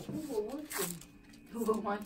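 Soft voices, with a brief rustle of wound-dressing material being handled by gloved hands about three-quarters of a second in.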